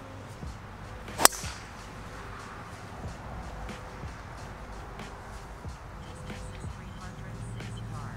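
A golf driver striking a ball off the tee: one sharp crack about a second in, from a well-struck, full-effort drive.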